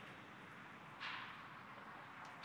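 Near silence: a faint steady hiss, with a soft swell of hiss about a second in that fades away.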